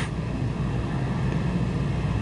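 Steady low background rumble with a faint, even hum above it.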